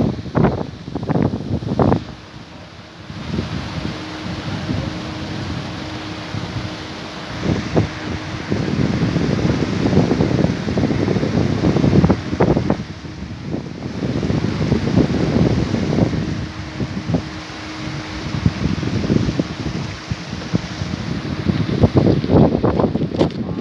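Wind buffeting the microphone in loud, irregular gusts over a steady rushing background, with a faint steady hum that comes and goes.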